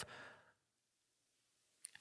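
Near silence, with a faint breath fading out at the start and a small click just before the end.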